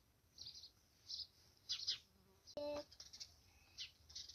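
Faint, scattered bird chirps, short and high, with one brief buzzy call about two-thirds of the way in.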